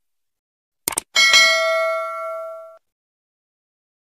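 Subscribe-button animation sound effect: a quick double mouse click about a second in, then a bright notification-bell ding that rings for about a second and a half and cuts off suddenly.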